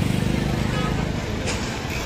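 Steady low rumble of road traffic in an open square, with a vehicle engine running nearby.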